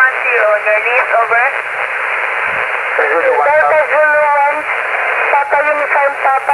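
An amateur radio operator's voice received on 40-metre lower sideband (7.085 MHz) through a transceiver: thin, narrow-band speech over a steady hiss of band noise, with a pause of about a second and a half in the middle.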